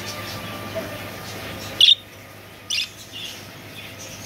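Budgerigars chirping: a few short, sharp high chirps, the loudest a little under two seconds in and another nearly a second later, over a steady background hum.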